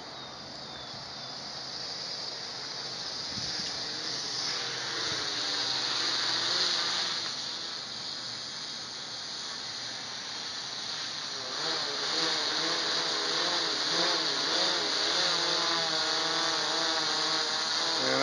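Quadcopter's electric motors and propellers buzzing as it flies back in overhead, growing steadily louder as it nears. Its pitch wavers up and down as the motors adjust, more strongly in the second half.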